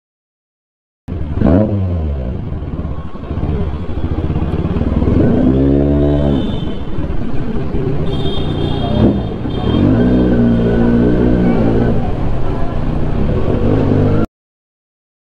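Kawasaki Z900's inline-four engine at low speed, revved up and let fall in blips about five and ten seconds in, running steadily between them. The sound starts about a second in.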